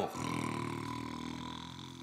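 A man snoring in his sleep: one long, low snore that slowly fades.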